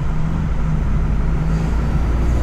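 Heavy goods vehicle's diesel engine running steadily while under way, heard from inside the cab as a deep drone with a steady hum over it.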